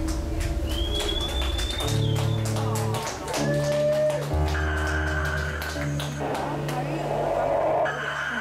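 Live industrial/EBM electronic music: a deep synthesizer bass line changing note about every second, drum-machine hits and synth tones, some sliding up in pitch, with a voice over them.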